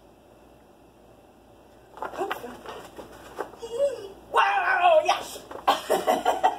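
Quiet room for about two seconds, then a woman's voice making high, drawn-out wordless praise sounds that grow much louder in the last second and a half.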